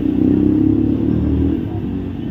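A motor vehicle engine running close by, a low drone that swells in the first second and a half and then eases off.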